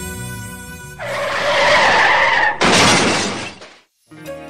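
Background music broken off by a road-accident sound effect: a tyre screech of about a second and a half, then a crash that dies away into silence.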